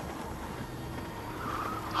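A car driving on a road at night: a steady low rumble of engine and tyres.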